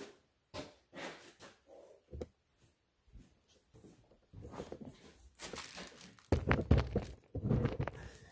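Handling noise of a phone camera being picked up and carried: a few scattered light clicks at first, then from about halfway a run of rustling, scraping and knocking, with the heaviest thuds near the end.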